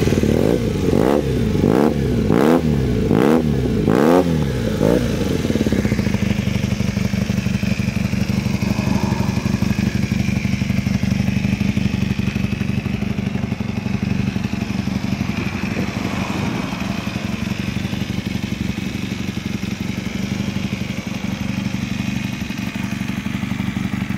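1978 Honda Hawk II CB400T's parallel-twin engine through an aftermarket exhaust, revved in a quick series of throttle blips for about the first five seconds, then settling to a steady idle.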